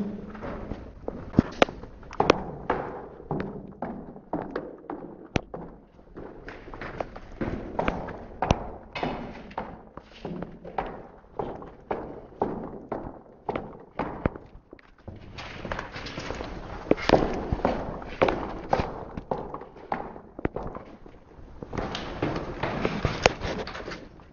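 Footsteps going down a flight of stairs: a run of uneven thuds and taps, roughly two a second, some steps landing harder than others.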